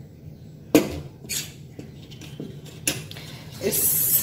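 Stainless steel bowls and a spoon clinking and knocking against each other: a sharp knock about a second in, then a few lighter clinks. Near the end a thin stream of liquid starts running into the small steel bowl as the water separated from the churned butter is poured off.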